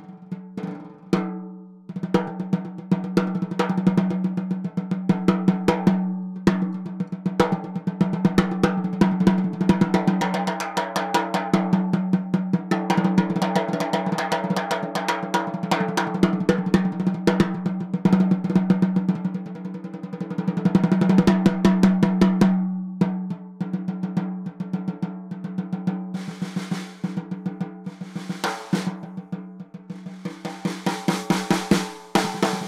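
Copper-shell Ludwig Acro snare drum played with sticks, snare wires off: single strokes, fast rolls and accents, each ringing on with a warm, dark tone. Near the end a high, hissing buzz joins the strokes as the snare wires come on.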